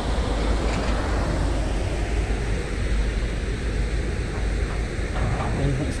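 Wind buffeting the camera's microphone: a steady, rumbling hiss that rises and falls slightly, heaviest in the low end.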